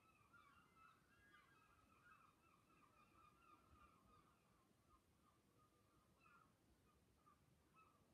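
Near silence: room tone with faint, continuous bird chirping.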